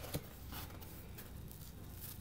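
Faint handling of a stack of 1982 Fleer baseball cards: one soft click just after the start, then a low steady hiss and hum.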